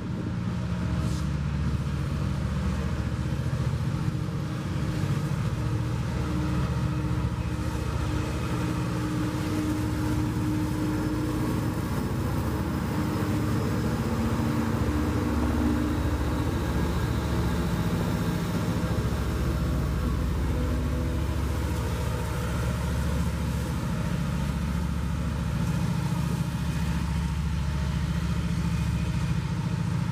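Norfolk Southern diesel-electric helper locomotives passing under power, their engines running with a steady low drone over the rumble of the train's wheels on the rails.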